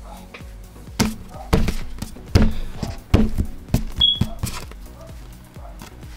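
A sticky, stretchy rubbery toy lizard slapped down onto a tabletop about five times, each a short dull thud, over background music.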